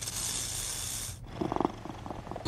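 Sound effects in the spoken intro of a hip-hop track: a burst of hiss-like noise, then after a brief gap a short fast rattle near the end.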